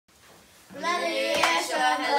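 Boys' voices singing together, starting a little under a second in, with a few sharp hand claps shortly after.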